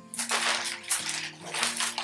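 A bag rustling and crinkling in a run of quick bursts as hands rummage in it and pull out a shirt, over soft background music.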